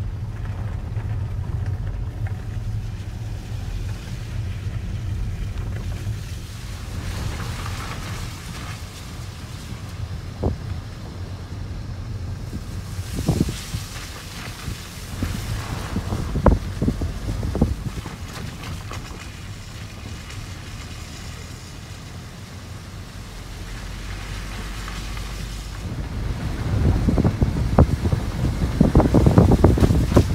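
Wind buffeting the camera microphone outdoors, a steady low rumble with a few scattered knocks, gusting harder and louder near the end.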